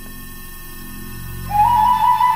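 A low steady hum, then about one and a half seconds in a recorder comes in with a loud, held high note that steps up slightly in pitch.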